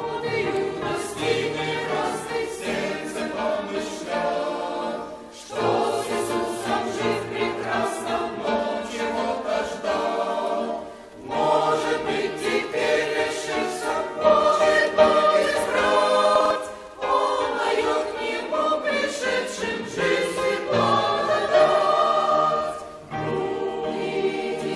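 Mixed church choir of women's and men's voices singing a hymn, in sustained phrases of about six seconds, each ended by a brief pause for breath.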